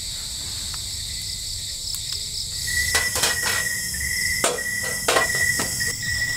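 Steady, high-pitched chorus of night insects. From about halfway a second, lower insect trill joins in, along with a run of sharp knocks and cracks from dry firewood sticks being handled and broken.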